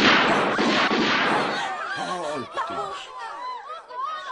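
Gunshots fired at close range, a sudden loud burst that dies away over about a second and a half, followed by a crowd crying out and shouting.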